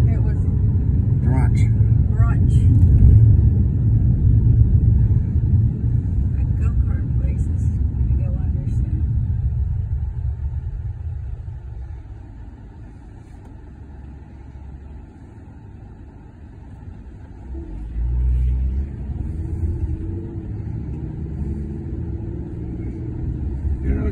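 Inside a Hyundai car: low engine and road rumble while driving, which dies down as the car slows and waits at a traffic light, then rises again sharply about 18 seconds in as the car pulls away.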